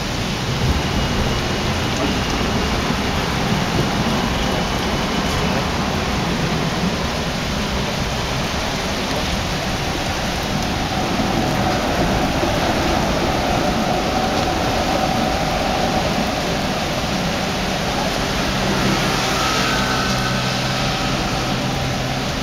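Heavy rain pouring down on a wet street, a loud steady hiss of downpour that does not let up.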